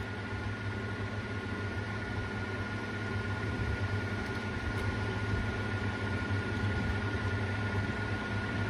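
Steady background hum and hiss with a thin constant high tone, and no distinct events.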